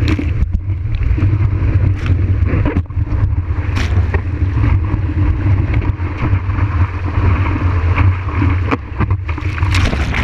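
Whitewater and water rushing past a surfboard-mounted camera as the surfer rides a breaking wave, a loud, steady rush with a deep rumble and scattered splashes.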